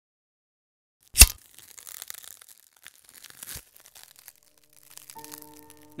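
An intro sound effect: one sharp, loud crack about a second in, followed by faint crackling with a second smaller knock, then a held music chord coming in near the end.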